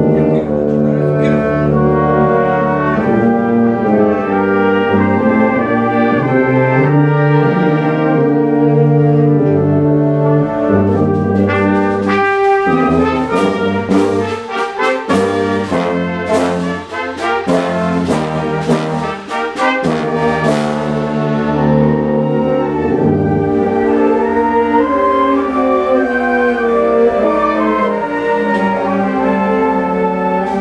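Wind ensemble playing a brass-heavy passage of sustained chords, with a run of sharp percussion strikes ringing out through the middle of it.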